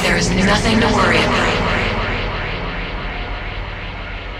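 Drum and bass breakdown in a DJ mix: the beat drops out, leaving a thick, jet-like synth wash with gliding tones and a voice sample, steadily fading. Its top end is cut off about halfway through.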